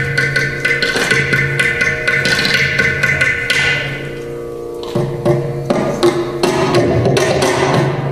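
Mridangam and ghatam playing a fast stream of interlocking strokes, a Carnatic percussion passage in Khanda Triputa tala. The strokes thin out and soften about four seconds in, then pick up again.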